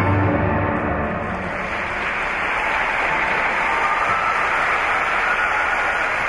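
The skating music's last held note fades out within the first second, and an audience applauds in the rink, the clapping swelling a couple of seconds in and then holding steady.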